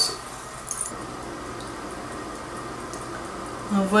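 Steady low background noise with no distinct sound event.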